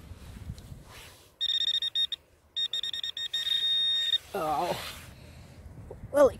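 Garrett Pro-Pointer pinpointer sounding on metal in the dug soil. Rapid high beeps start about a second and a half in and run into a steady tone, which cuts off about four seconds in. A short wordless voice follows.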